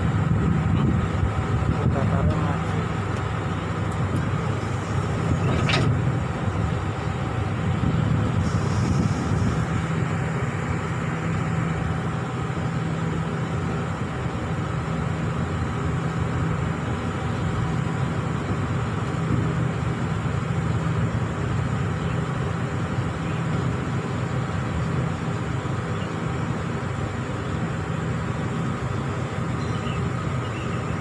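Steady low rumble of diesel railway engines running at a station stop. There is a brief high squeak about six seconds in and a short hiss a little later.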